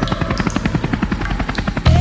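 Helicopter rotor blades chopping with a fast, even beat. Just before the end a deep bass note of music cuts in suddenly and becomes the loudest sound.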